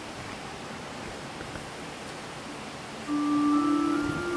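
Quiet hush of a large reverberant church for about three seconds, then an electronic keyboard on an organ sound starts holding steady sustained notes, the opening chord of the hymn's introduction, with more notes joining a moment later.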